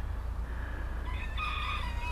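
A rooster crowing faintly, one long held call in the second half, over a steady low rumble.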